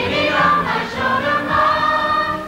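A youth choir singing with instrumental accompaniment in a song-and-dance number.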